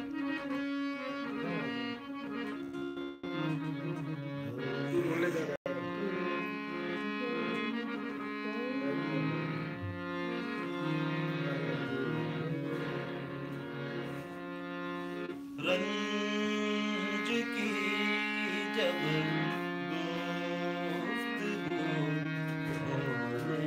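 Harmonium playing a slow Hindustani classical melody over a steady held drone note. The sound cuts out for an instant about five and a half seconds in.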